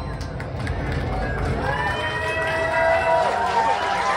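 A crowd's voices, with several people talking and calling out at once, swelling from about a second and a half in.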